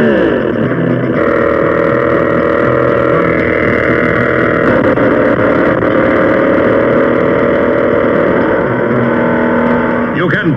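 Mattel V-RROOM! toy dump truck's battery-powered engine-noise maker running with a steady, buzzy, engine-like roar. Its pitch drops in the first half second, and its tone shifts slightly about a second in and again near the middle.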